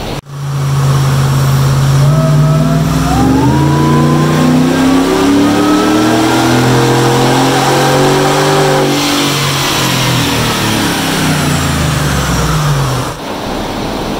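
Callaway-supercharged 6.2-litre V8 of a GMC Yukon Denali making a full-throttle pull on a chassis dyno, on a freshly revised tune. The engine note and a supercharger whine climb steadily in pitch for about seven seconds, then wind back down as the rollers coast to a stop.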